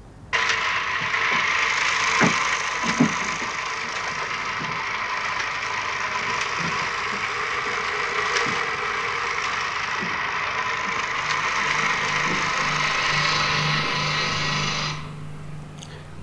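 Hand-held film camera running, a steady mechanical whir that starts abruptly and cuts off about a second before the end, with two sharp knocks about two and three seconds in.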